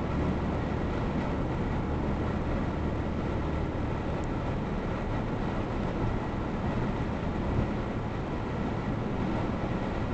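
Steady tyre and engine noise of a car cruising at highway speed, heard from inside the car's cabin.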